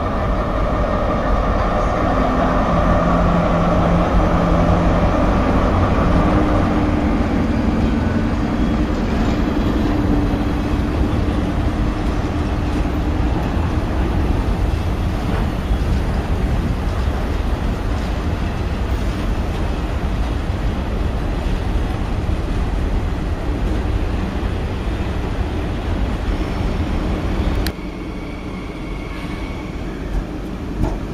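An SNCF BB 75000 diesel locomotive runs past with its engine humming and whining for the first several seconds. A train of flat wagons follows it, rolling by with a steady low rumble. Near the end the sound cuts abruptly to a quieter station background.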